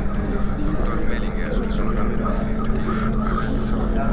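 Dense, steady layered soundscape: indistinct voices over a constant low hum and a continuous vehicle-like rumble.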